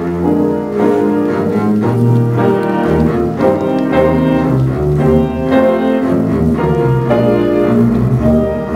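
Double bass and piano playing a waltz: the bass holds long low melody notes over repeated piano chords.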